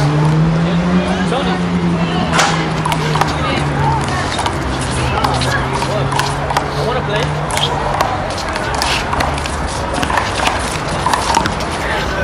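One-wall handball rally: a small rubber ball repeatedly slapped by bare hands and smacking off a concrete wall and court, heard as many sharp, short knocks. Under it runs a low steady hum that fades out about eight seconds in, with voices in the background.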